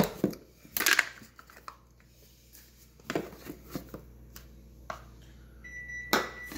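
Hard plastic clacks and knocks, a handful spaced a second or so apart, as a plastic measuring cup taps and scrapes in a plastic container of cocoa powder and the container is handled. A faint steady high tone begins near the end.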